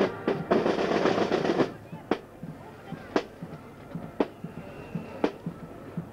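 Marching band drums: a snare drum roll of about a second, then single drum strokes about once a second, keeping the marching time.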